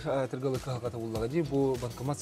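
Only speech: a man talking in a low voice.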